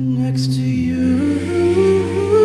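A cappella vocal group singing sustained chords in several voice parts without instruments; the bass voice steps down to a lower note about a second in while the upper voices climb in small steps.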